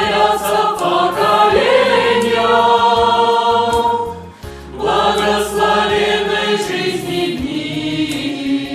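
A mixed choir of women's and men's voices singing held, sustained chords, with a short break about four seconds in before the voices come in again.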